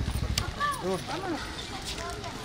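People's voices talking nearby, over a low, fast, even throbbing that stops about half a second in.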